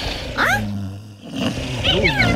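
Wordless cartoon-creature vocal sounds: a short rising squeak about half a second in, then a low held hum, with more grunting vocal noises starting near the end.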